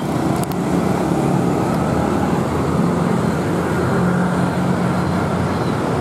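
Road traffic: a steady rush of passing vehicles, with a low engine hum that grows stronger in the second half.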